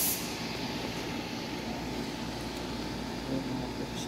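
Steady low background rumble and hiss, with a short high hiss right at the start and a faint knock a little after three seconds in.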